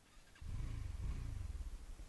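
Motorcycle on the move: after a brief near-silent moment, a low rumble of engine and wind noise starts about half a second in and carries on steadily.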